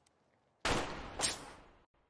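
A gunshot in a film soundtrack: a sudden loud report, then a second sharp crack about half a second later, both fading away within about a second.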